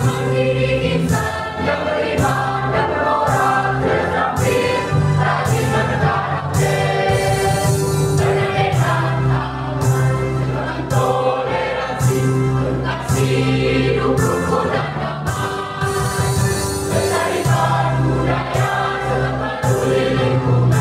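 A mixed choir of boys and girls singing together in sustained, held notes, several pitches sounding at once.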